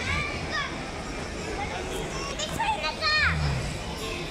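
Indistinct background voices with high-pitched calls or shouts, typical of children, rising and falling; one comes at the start and a cluster comes about two and a half to three seconds in, over a steady hum of crowd noise.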